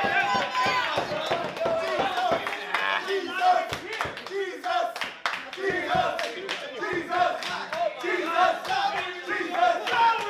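A small wrestling crowd around the ring shouting and yelling, with loud calls coming about once a second.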